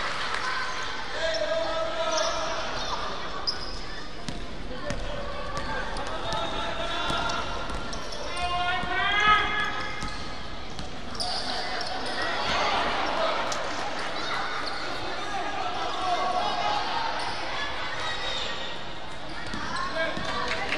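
A basketball being dribbled and bounced on a wooden gym floor during play, with players and coaches shouting over it; one loud rising shout comes near the middle.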